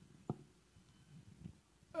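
Near silence: faint room tone with a single soft knock about a third of a second in.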